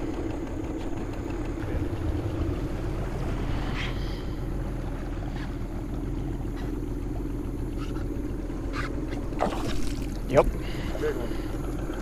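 A boat motor running steadily with the boat under way, an even drone throughout. A few short sounds break in about ten seconds in.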